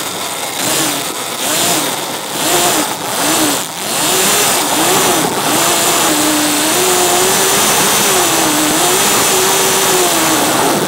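72-volt electric quad's motor whining. For the first four seconds it rises and falls in short throttle bursts, then it holds as a longer, slowly wavering whine as the quad circles, over a steady hiss of tyres on the wet surface.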